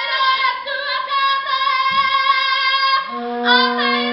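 Young women's voices singing together in a kapa haka group song, with high, held notes. A steady lower note joins about three seconds in.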